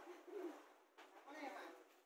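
Near silence, with a few faint low-pitched calls near the start and a faint voice in the background.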